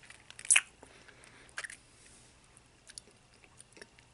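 Close-up wet mouth sounds of a man working a lollipop in his mouth: sharp smacking clicks, the loudest about half a second in and another at about a second and a half, then a few small ticks.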